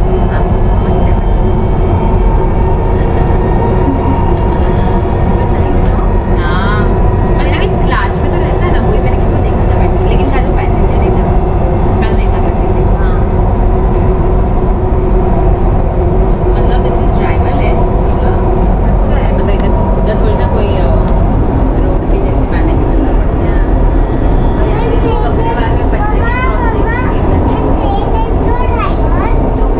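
Dubai Metro train running along its elevated track, heard from inside the car: a loud, steady rumble with a constant whine over it.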